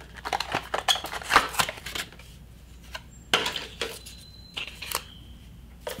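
Paper wrapping crinkling and rustling as it is pulled off a roll of non-slip grip tape, the handling busiest in the first two seconds, then thinning to a few scattered clicks.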